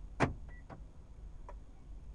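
A sharp knock inside a stopped car, followed by three lighter clicks over the next second or so, one of them with a very short high beep, over a steady low rumble.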